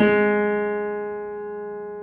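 Casio digital piano: a chord struck once and held, fading slowly.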